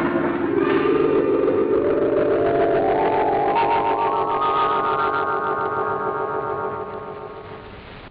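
Film-score music: a sustained chord climbing steadily in pitch over about five seconds, then fading and cutting off near the end.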